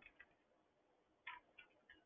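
A few faint computer keyboard clicks, scattered and irregular, over near silence.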